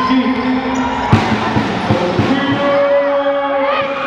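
A basketball bouncing several times on a gym floor between about one and two and a half seconds in, the first bounce the loudest, over the shouting voices of players and spectators in the hall.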